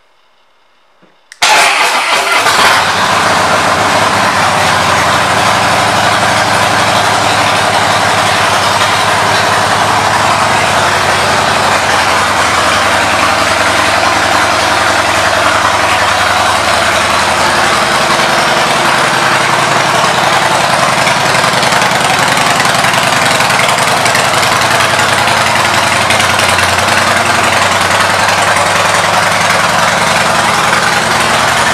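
A 2015 Harley-Davidson Breakout's air-cooled V-twin engine starts about a second and a half in, coming in suddenly and loudly, then runs at a steady idle.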